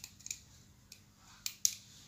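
Thin steel E-I core laminations of a small transformer clicking against each other as they are prised out of the core with a screwdriver: about five short, sharp metallic clicks, the loudest near the end.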